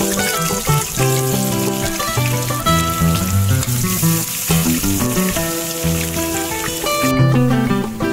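Onion and garlic sizzling in hot oil in a pot, under background music with steady melodic notes and a bass line. The sizzling cuts off suddenly about seven seconds in, leaving the music.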